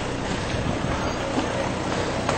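Steady background noise with no distinct event standing out.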